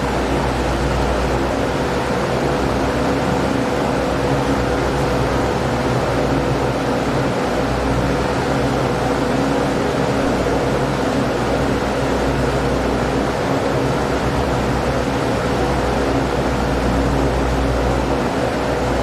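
A steady hum and hiss of running machinery or electrical noise, with a constant mid-pitched tone and a low drone, unchanging throughout.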